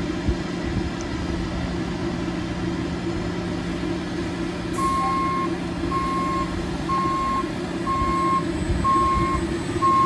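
Trolley bus reversing: its back-up alarm starts about five seconds in with a brief hiss, then beeps about once a second over a steady low hum.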